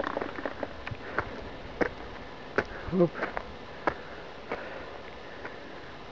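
Footsteps of a walker on a stony forest trail: irregular short sharp steps, about one or two a second, over a faint steady hiss.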